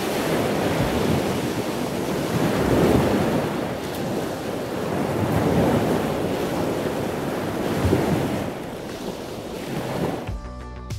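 Wind buffeting the microphone: a loud, rushing rumble that swells and eases every two or three seconds.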